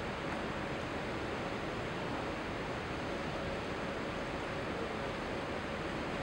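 Steady, even hiss of background room noise, with a faint steady hum underneath and no distinct events.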